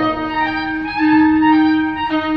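Clarinets and bassoons playing a slow, sustained passage together: a low note held steady under upper voices that move to new notes a couple of times.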